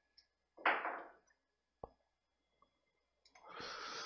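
A computer mouse button clicks once, sharply, near the middle. A short exhale sounds close to the microphone about half a second in, and a longer breath follows near the end.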